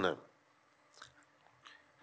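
A man's speaking voice ending a word, then a pause broken by two faint clicks, one about a second in and one near the end.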